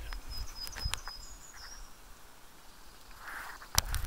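Quiet outdoor ambience with faint, thin, high whistle-like tones in the first second or so and a few light clicks, ending in a sharp click near the end as the camera is handled.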